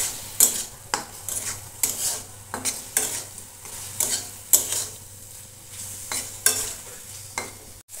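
Steel spatula scraping and knocking against a metal kadai as diced potatoes in tomato masala are stirred, in a run of sharp strokes about one or two a second, over a low sizzle of frying.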